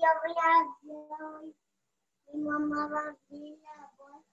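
A high-pitched voice singing in short phrases, with some notes held at a steady pitch and a pause in the middle.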